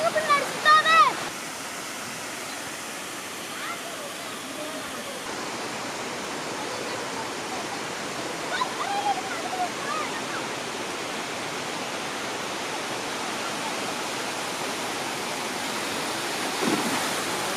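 Steady rushing of water pouring over a small concrete weir into a shallow stream. Voices are heard for the first second or so, and faintly a couple of times later on.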